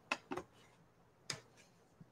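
A pause with a few faint, short clicks: two close together near the start and one a little over a second in.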